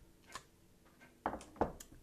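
Hard plastic clicks and knocks from a clear acrylic stamp block and stamping gear being handled on a tabletop: one faint click about a third of a second in, then a quick run of sharper knocks in the second half.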